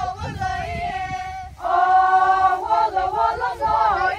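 A group of women singing a folk song together in unison, with no instruments. A new phrase starts about one and a half seconds in, louder, opening on a long held note before the melody moves on.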